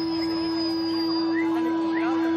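Amplified electric guitar feedback from a punk band's rig: one steady held tone over crowd noise, with a few short rising whistles from the audience.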